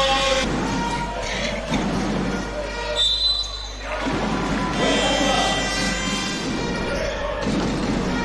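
Basketball game sound in an indoor arena: a ball dribbling on a hardwood court, with crowd voices and arena music in the background.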